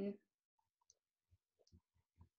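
A spoken word trailing off, then near silence broken by a handful of faint, short, scattered clicks.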